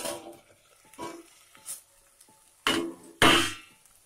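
Steel pot and lid clanking and scraping in a few separate knocks, the loudest about three seconds in, as the lid is taken off a pot of boiled fish.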